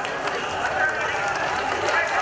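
A marching crowd shouting, many voices overlapping into a steady din.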